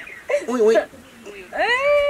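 A woman's whining mock crying: short wavering cries, then one long cry that rises in pitch and holds near the end.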